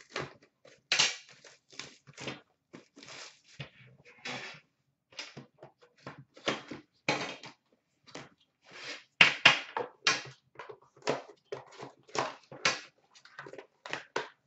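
Hands unwrapping and opening a hockey card tin: irregular crinkling and rustling of plastic wrap and packaging, in many short scrapes with small clicks and knocks between them.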